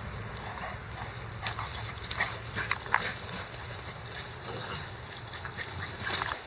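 Dogs at play: a cluster of short, sharp sounds between about one and a half and three seconds in, over a steady low rumble.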